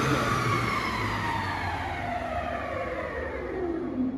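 Martin T25 spindle moulder's spindle and motor running down after switch-off: a whine of several tones falls steadily in pitch and fades over the four seconds.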